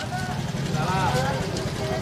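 Motor scooter engine running as it rides slowly past close by, a steady low putter, with people's voices talking over it.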